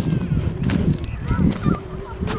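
Footsteps crunching on beach pebbles at a walking pace, with wind rumbling on the microphone. A few faint high chirps come about halfway through, and a drawn-out, slightly wavering low tone starts in the second half.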